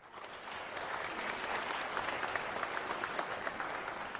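Theatre audience applauding: dense, steady clapping that builds within the first half second as the orchestra falls silent.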